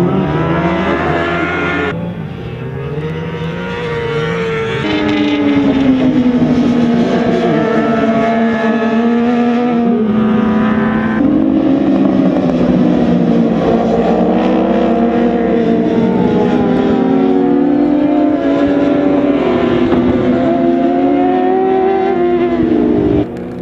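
Several racing sport motorcycles at high revs, their engine notes overlapping and rising and falling as they accelerate, shift and slow for corners. The sound jumps abruptly a few times where the footage cuts between shots.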